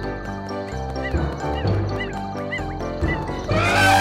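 Cheerful cartoon background music with a few short chirps midway, then a loud, wavering cartoon elephant trumpet call near the end.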